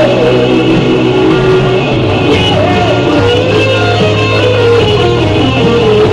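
Electric guitar lead from a Gibson Les Paul, with bent and sustained notes, played over a rock ballad backing track with bass.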